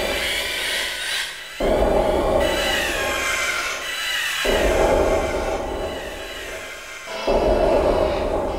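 Industrial noise music built from looped samples: a dense, distorted grinding block that cuts in abruptly and repeats about every three seconds, with wavering high tones above it.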